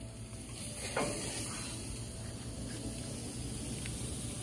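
Faint steady hiss from the hot barbecue grill, with one light knock about a second in.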